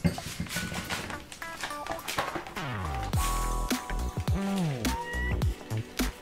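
Background electronic music with a steady beat and sliding synth tones.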